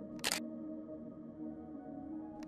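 Soft ambient background music with steady sustained tones. About a quarter second in, a short sharp burst of noise is heard, a transition sound effect.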